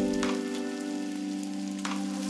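Food sizzling in hot oil in a frying pan: a steady hiss with a couple of small pops, about a quarter second in and near the end.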